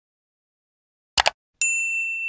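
Sound effects of an animated logo intro. Silence, then a quick double click a little past a second in, followed by a bright, high ding that rings on.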